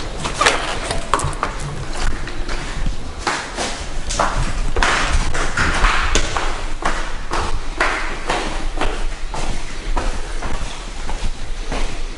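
A white PVC door being opened, its handle and frame clicking. Then footsteps climbing tiled stairs, about two steps a second.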